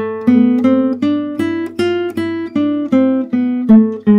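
Nylon-string classical guitar playing the A harmonic minor scale one plucked note at a time, about three notes a second. It climbs from the low G sharp and then comes back down.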